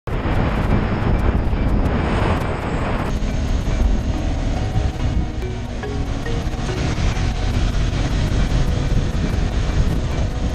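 Wind rushing over the camera microphone of a moving KTM 390 Adventure motorcycle, with engine and road noise beneath; the higher rush lessens about three seconds in. Background music with a steady beat runs faintly underneath.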